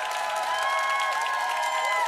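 Studio audience applauding and cheering at the end of a live song.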